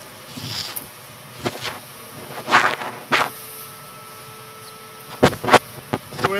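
Scattered sharp knocks and clatter in a reverberant church, with two knocks close together near the end.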